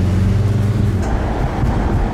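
A car driving, heard from inside its cabin: a steady low engine hum for about a second, then mostly even road and wind rush.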